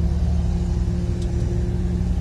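Komatsu mining dump truck's diesel engine running, a steady low drone with a held hum, heard from inside the cab.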